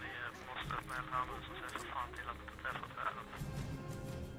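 A man speaking Swedish over background music with a steady low tone, the speech giving way to the music near the end.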